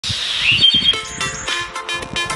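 A short chirping bird call, a quick rising whistle and a few rapid chirps, at the start, followed about a second in by an upbeat electronic intro jingle.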